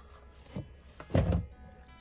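Soft solo acoustic background music, with a dull handling thump just after a second in and a smaller knock before it.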